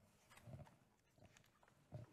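Near silence, with a few faint soft taps and rustles from a hardback pop-up picture book being handled as its page is turned.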